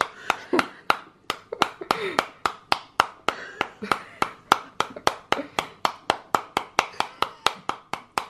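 A metal spoon beating steadily on the skin of a halved pomegranate, about four strikes a second, knocking the seeds loose into the hand and onto the plate.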